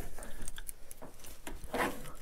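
Hoist rope being hauled to lift a coyote carcass on a gambrel, with scattered light clicks from the hook hardware and a short scraping rub near the end.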